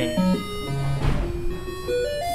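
Software synthesizer played from a touchscreen, its electronic tones jumping from one held pitch to another several times a second as the touch position changes the frequency, with a short hiss about halfway.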